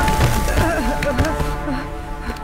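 Film sound effects of a wooden stall splintering and debris clattering as a falling body lands on it. A dramatic music score fades underneath.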